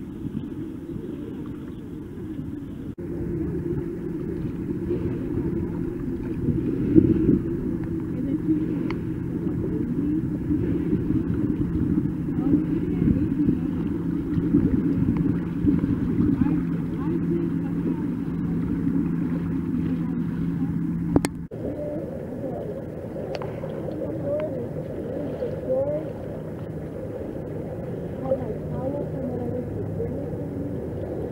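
Lake water sloshing and lapping right at the microphone, with a steady low motorboat engine hum underneath for much of the time. The sound changes abruptly twice, about three seconds in and again about two-thirds of the way through.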